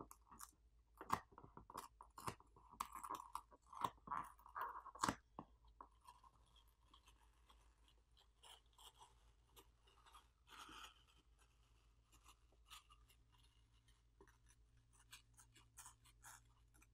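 Graphite heat-spreading film being peeled off a smartphone's midframe, its adhesive backing crackling and crinkling as it lifts. A quick run of faint crackles and clicks is thickest in the first five seconds, then grows sparser.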